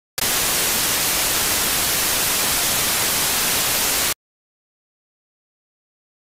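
A loud burst of static hiss, heaviest in the high end, that switches on abruptly and cuts off suddenly about four seconds later.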